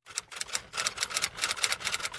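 Typewriter-style typing sound effect: a rapid, fairly even run of key clicks, roughly ten a second, laid under text being typed onto the screen.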